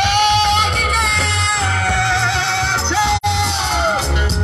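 Ghanaian gospel live band playing, with a singer holding a long high note for nearly three seconds, then starting another, over a steady bass line. The sound cuts out for an instant about three seconds in.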